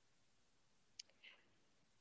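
Near silence, with one short faint click about a second in and a faint brief trace just after it.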